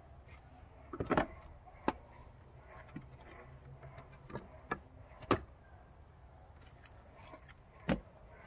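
Pieces of split firewood knocking against each other and the pile as they are stacked by hand: about seven sharp wooden knocks, spaced irregularly, with quiet between them.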